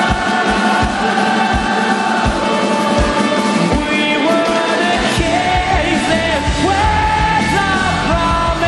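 Live rock band playing with a regular kick drum beat, and a large crowd singing a wordless melody along with the band; the singing line becomes prominent about halfway through.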